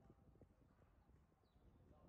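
Near silence: a faint low outdoor background with a couple of soft knocks in the first half second.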